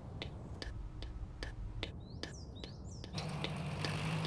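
Steady ticking, about three ticks a second, over a low rumble, with a few short bird chirps about two seconds in. About three seconds in, a low steady hum sets in under the ticking.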